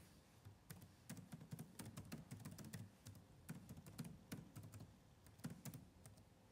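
Fingers typing on an HP laptop keyboard: a soft, irregular run of quick key clicks, several a second with short pauses between bursts.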